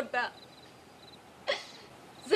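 A woman crying: the tail of a tearful word, a pause, then one short, sharp sobbing breath about a second and a half in.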